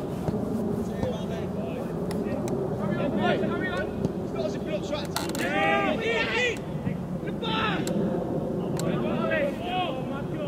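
Voices shouting and calling across a football pitch during play, with a few sharp knocks in between, over a steady low background noise.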